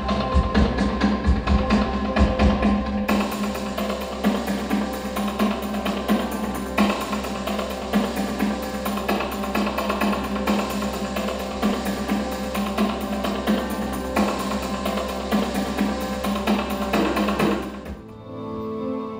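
Music with a fast, steady percussive beat over a sustained low bass; the sound grows fuller and brighter about three seconds in.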